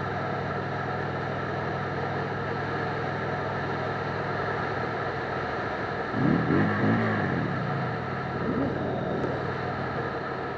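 Motorcycle engine running at road speed with wind noise on the helmet-mounted camera; about six seconds in, the throttle is blipped several times in quick succession, the pitch jumping up and falling back, then once more, more briefly, a couple of seconds later. The revving is a warning to a driver pulling out ahead.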